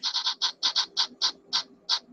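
Spin-the-wheel app ticking as its wheel spins: about ten high, sharp clicks, spaced ever wider apart as the wheel slows down.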